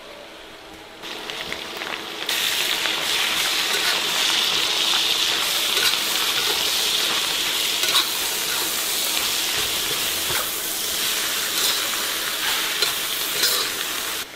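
Dried cabbage and pork belly stir-frying in a wok of hot rendered pork fat: the sizzle is quiet at first, then jumps to a loud, steady sizzle about two seconds in as the cabbage goes into the oil. A spatula scrapes and knocks against the wok now and then as the food is stirred.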